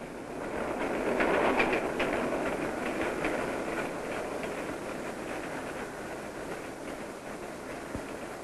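New York City subway train passing, its wheels clacking over the rail joints. It swells to its loudest between one and two seconds in, then slowly fades to a steady, fainter running noise.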